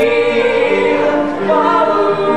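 Voices singing a cappella in harmony, holding long notes that change pitch about halfway through and again near the end.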